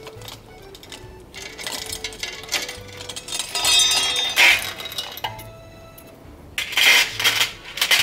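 Bicycle roller chain being pulled off the chainring and rear sprocket after its pin has been removed, the metal links clinking and rattling in several bursts, loudest just before halfway.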